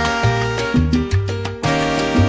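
Salsa karaoke backing track with the lead vocal removed: a bass line repeating its pattern under held chords from the band, with a brief drop in loudness about a second and a half in.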